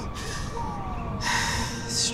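A woman's sharp, audible inhale about a second in, taken in a pause mid-sentence while she speaks emotionally. A faint tone glides slowly downward beneath it.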